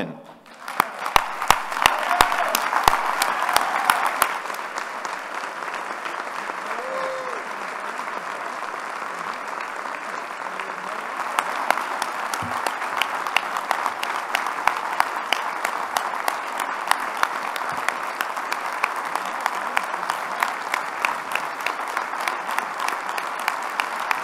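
A large audience applauding at length in a standing ovation. The clapping is loudest in the first few seconds, eases a little, then swells again from about eleven seconds in.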